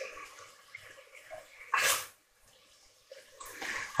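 Diced bacon frying faintly in a cast iron casserole dish as it is stirred, with one short hissing burst about two seconds in.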